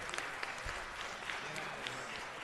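Audience applauding: a steady patter of many hands clapping, with a faint voice near the end.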